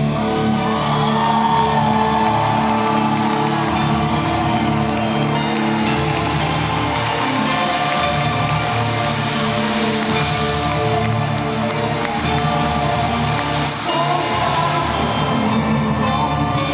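A symphonic metal band playing live: electric guitar and keyboards, with a singing voice gliding over the music at the start and again near the end.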